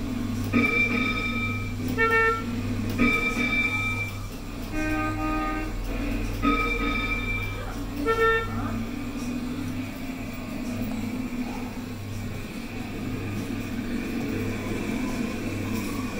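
Coin-operated school bus kiddie ride sounding short electronic horn toots and musical sound effects, about six in the first nine seconds as its dashboard button is pressed. A steady low hum of the ride running sits under them throughout.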